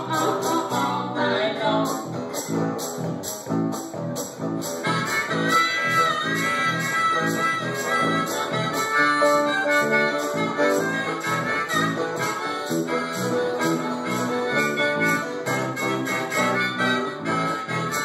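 Live blues trio playing an instrumental passage: acoustic guitar strummed in a steady rhythm over bass guitar, with a harmonica coming in about five seconds in and playing long held and bending notes over the band.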